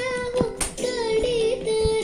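Indian song: a high singing voice holding and ornamenting a melodic line over light accompaniment, with a few percussive hits.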